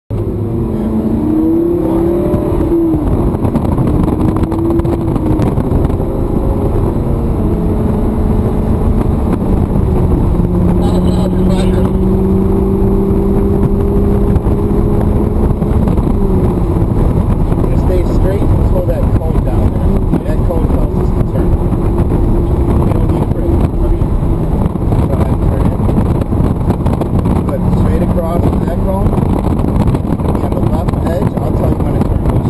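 Lamborghini Gallardo's V10 engine heard from inside the cabin on track, its pitch rising and falling with throttle and gear changes in the first few seconds, holding steady for a stretch in the middle, dropping about halfway and climbing again near the end.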